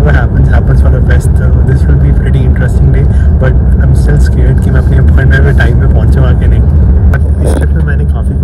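Steady, heavy low rumble of a bus on the road, heard from inside the passenger cabin, with a man talking over it.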